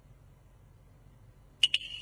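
A pause in the Cantonese opera accompaniment, then, about one and a half seconds in, two quick metallic percussion strikes that leave a high, steady ringing tone.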